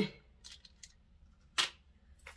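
A single sharp click about one and a half seconds in, with a couple of faint ticks before it, over quiet room tone.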